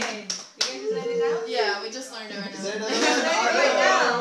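A few hand claps in the first second, then several people talking and calling out over one another.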